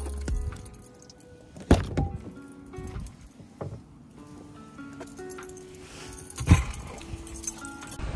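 Keys jangling and a minivan's driver door being opened and then shut with a thud as someone gets in, two sharp knocks standing out, over background music with held notes.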